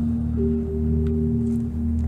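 Ambient background music: a low steady drone under a held tone, with a second, higher tone joining about half a second in and stopping shortly before the end.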